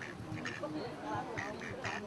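Mallard drakes giving several short, raspy quacks, over a murmur of background voices.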